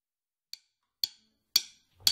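A steady count-in before the song: sharp clicks evenly spaced about half a second apart in otherwise dead silence, the first the faintest.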